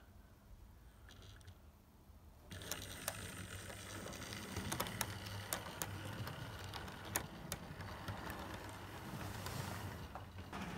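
Model train pulling away and running past on the layout track: a steady low electric-motor whirr with wheels clicking over the rail joints, starting about two and a half seconds in after a quiet start.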